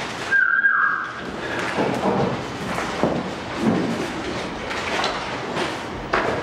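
Sheets of paper rustling and shuffling on a lectern as they are handled. Near the start there is a brief high tone that slides downward.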